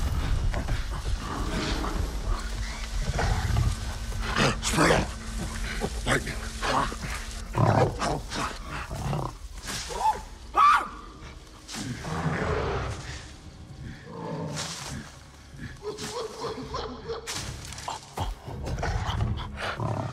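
Ape vocalisations from the film's sound design: short hoots, grunts and calls, broken up by rustling through tall grass, with a faint low drone during the first half.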